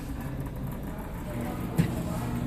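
Steady low hum, joined by a steady low tone about a second and a half in, with one short click near the end.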